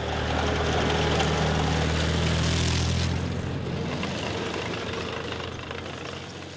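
Heavy engine of a tracked armoured vehicle running steadily as it drives, a deep even hum with a noisy rumble over it, fading out near the end.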